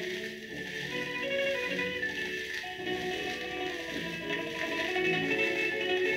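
An orchestra playing a waltz, reproduced from a 78 rpm shellac record on a turntable, with the record's surface hiss and crackle running under the music.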